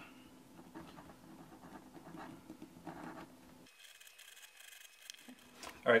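Faint scraping of a leather edge beveler shaving the edge of a small veg-tan leather patch, a few soft strokes over a low room hum. About three and a half seconds in, the sound cuts off abruptly to near silence.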